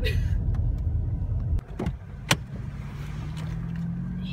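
Car cabin sound as the car pulls in and stops: a low driving rumble that drops away about a second and a half in, then two sharp clicks about half a second apart, then a steady low hum.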